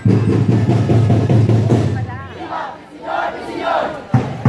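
Dance music with a steady bass line that fades about halfway through, followed by a group of voices shouting and cheering.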